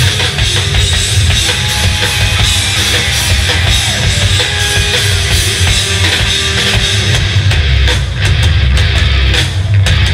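Live nu-metal band playing loud: distorted electric guitars and bass over a pounding drum kit. About three-quarters of the way through, the low end grows heavier and the separate drum hits stand out more.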